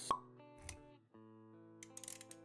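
Intro jingle: a sharp pop sound effect right at the start, then steady musical notes with a soft low thud just after half a second. The music breaks off briefly about a second in and starts again.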